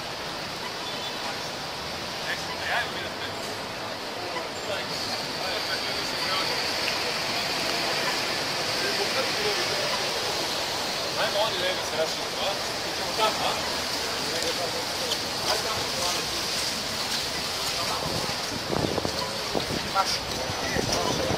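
City street ambience: a steady hiss of traffic on a wet road, with the indistinct voices of a group of people talking.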